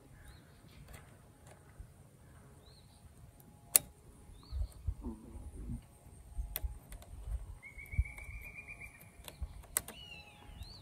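Sharp clicks and soft knocks from hands working a chainsaw chain and file guide on a truck tailgate. The loudest click comes just under four seconds in. Birds call in the background: two short chirps around three seconds in and one longer held call near the end.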